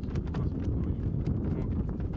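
Wind buffeting the microphone with a steady low rumble, over irregular crackling footsteps on dry leaves and grass.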